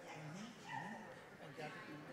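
Faint, indistinct conversation between a few people in a large room, the voices distant and unclear.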